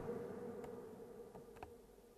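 Faint steady hum that slowly fades out, with a few soft clicks.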